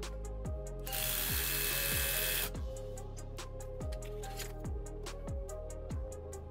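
Cordless drill running in one burst of about a second and a half, starting about a second in, over background music with a steady beat.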